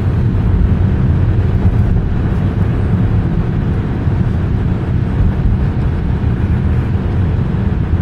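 Steady road and engine noise inside a car's cabin while driving at highway speed, a low, even rumble.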